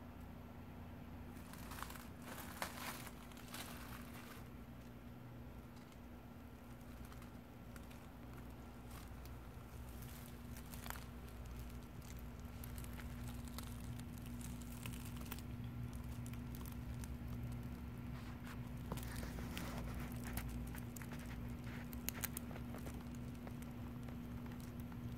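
Dry leaves crackling and gravel shifting under a snake's body as it slides down a wall and crawls across them, in scattered clusters of small rustles and clicks.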